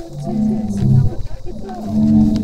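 Zadar Sea Organ: waves force air through the pipes under the stone steps, sounding several overlapping low, held organ-like tones that shift in pitch every second or so.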